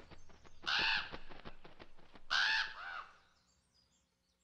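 A crow cawing twice, the calls about a second and a half apart.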